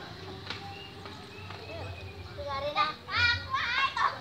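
Children's voices: after a quieter start with a faint low rumble, a child calls out and talks excitedly from about halfway through, loud and high-pitched.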